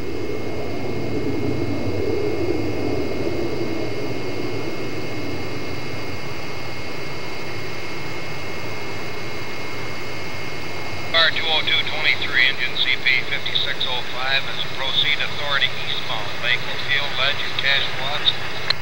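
Distant CP Rail diesel locomotive approaching, a steady low drone that is strongest in the first few seconds. From about eleven seconds in, a busy run of short, sliding high-pitched calls sounds over it.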